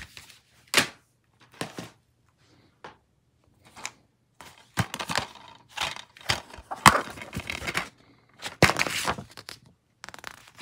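Plastic DVD cases being handled: a few separate clacks, then a busy stretch of clattering and rustling as a case is opened and its paper insert is pulled out.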